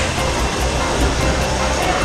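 Steady indoor mall background noise: a low hum with faint background music.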